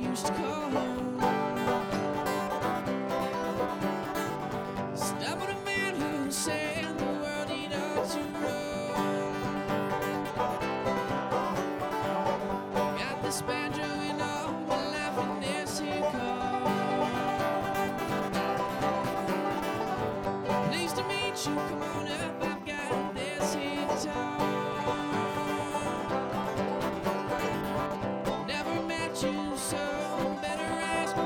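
Live bluegrass trio of banjo, mandolin and acoustic guitar playing a tune together, with the banjo's picked notes to the fore, at a steady level.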